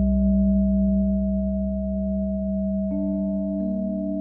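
Ambient meditation music built on steady held tones, with a sustained 639 Hz solfeggio tone over a low drone. Soft new notes fade in about three seconds in and again shortly after.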